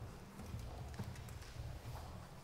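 Faint uneven knocks and shuffling in a hall, one sharper knock about a second in, over low rumbling room noise; no accordion playing.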